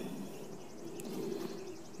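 Quiet outdoor background with a faint, high, rapidly pulsing chirr and one faint tick about a second in.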